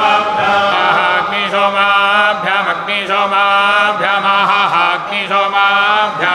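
A group of men chanting Vedic verses in the sung (gana) style: long, melodic held notes that shift in pitch about every second, with no pause.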